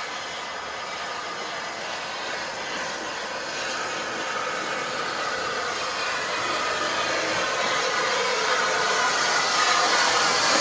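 Steam locomotive 35028 Clan Line, a rebuilt Southern Railway Merchant Navy class Pacific, running slowly into the station with a steady hiss. It grows louder as it comes alongside.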